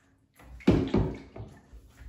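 Water splashing and sloshing in a bathtub: a short cluster of quick splashes starting about half a second in, the loudest two close together, then dying away.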